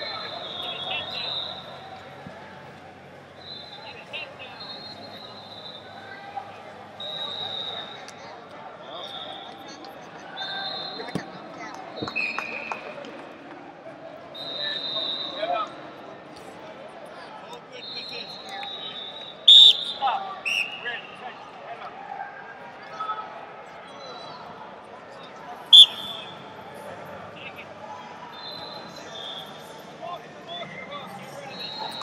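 Wrestling shoes squeaking again and again on the mat as two wrestlers scuffle on their feet, over the low murmur of a large hall. Two sharp, loud smacks stand out, one a little past the middle and one later on.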